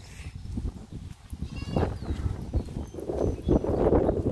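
A goat bleating, with one clear call about halfway through and more calling near the end.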